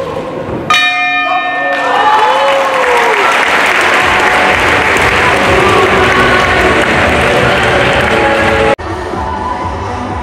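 Boxing ring bell struck about a second in and ringing for about a second, ending the round, followed by crowd applause and cheering. The sound cuts off abruptly near the end into background music.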